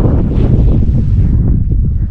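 Wind buffeting the camera's microphone: a loud, low, gusting noise.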